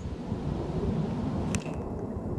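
Wind buffeting the microphone, an uneven low rumble, with a single sharp click about one and a half seconds in.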